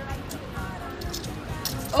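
Music playing quietly under faint voices, with a few light clinks of loose coins being rummaged for in a car's cup holder.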